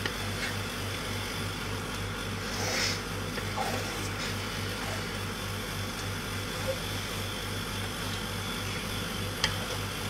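Kitchen range hood extractor fan running with a steady low hum. Under it come a few faint scrapes of a ladle stirring sambal in a wok.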